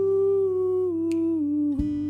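A man humming a long wordless vocal line that steps down in pitch, over a steel-string acoustic guitar strummed a couple of times.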